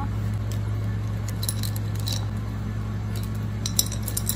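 Scattered small clicks and clinks from a glass jar with pearls inside being handled and turned, over a steady low hum.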